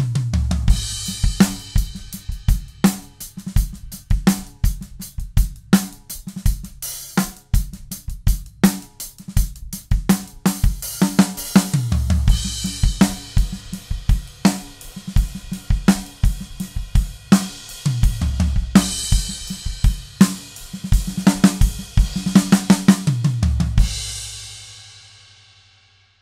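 A four-piece drum kit (20-inch kick, 14-inch snare, 10- and 14-inch toms, hi-hat and cymbals) played as a steady groove, heard through the mix of close microphones on every drum plus overheads. Tom fills break in about every six seconds, and the playing ends on a cymbal crash that rings out and fades near the end.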